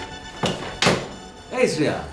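Two dull thuds, about half a second apart, over steady background music.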